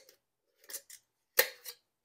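Metal canning band being screwed onto the threads of a glass quart mason jar over its flat lid: a few short scraping clicks, the sharpest about one and a half seconds in.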